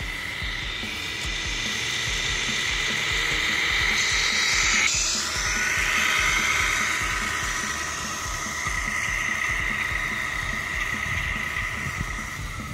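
Tamiya Grand Hauler RC semi truck driving: a whine that rises and falls with speed, over the low pulsing diesel-engine rumble played by its MFC sound unit. It is loudest as the truck passes close by, about halfway through, with a sudden change in pitch around then.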